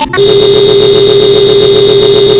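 A loud, steady electronic buzzing tone held at one unchanging pitch, cutting in sharply a moment in after the cartoon soundtrack stops: a harsh synthetic sound effect laid over a video glitch edit.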